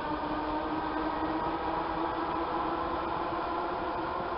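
ER2-series electric multiple unit running away along the track, heard as a steady hum with a few held tones over an even hiss.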